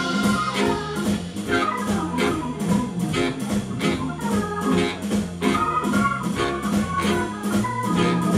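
Live blues band in an instrumental passage: a keyboard with an organ sound stands out over drums, bass, electric guitar and tenor and baritone saxophones, with a steady beat.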